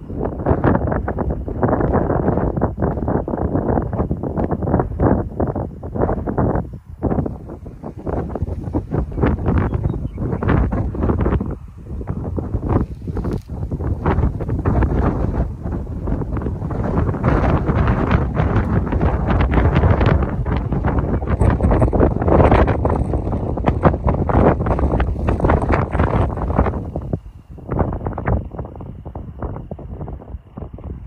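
Wind buffeting the microphone in gusts: a loud, rough rush with no steady tone, easing briefly a few times.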